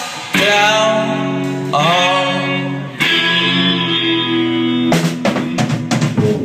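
Live rock band playing loud: electric guitars ring out long held chords over drums, and a quick run of drum hits breaks in near the end.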